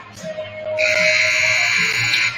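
Gymnasium scoreboard horn sounding one steady, buzzy blast of about a second and a half, starting just under a second in. It is the signal ending a timeout, with music playing underneath.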